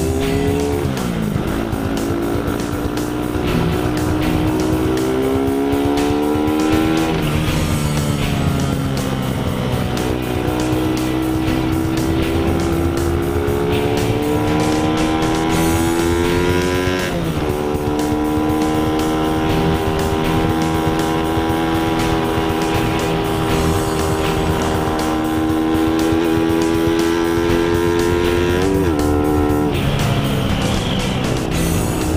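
150 cc single-cylinder sport motorcycle engine running under way. Its pitch climbs slowly through each gear and drops sharply at four upshifts: about a second in, about a quarter of the way through, just past the middle, and near the end.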